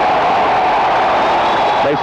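Hockey arena crowd noise: a steady, loud din of many voices from the stands. A man's voice starts just at the end.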